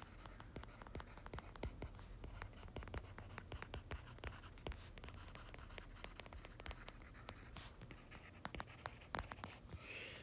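Faint tapping and scratching of a stylus tip on a tablet's glass screen while handwriting, an irregular run of small clicks.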